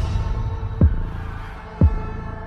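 Trailer sound design: two deep booming pulses, each dropping quickly in pitch, one about a second apart, over a steady low drone.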